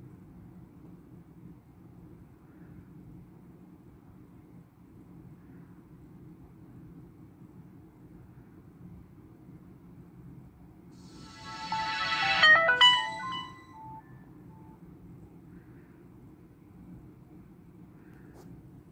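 The Samsung Transform's old pre-Galaxy S Samsung startup sound playing from the phone's speaker as it boots: a short electronic jingle of about three seconds, a swell of tones ending in a few quick notes, about eleven seconds in. Otherwise only a faint low hum.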